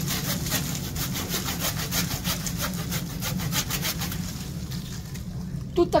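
Hand saw cutting through a thick green lemon tree branch: steady back-and-forth strokes of the blade through the wood, which thin out and stop about five seconds in.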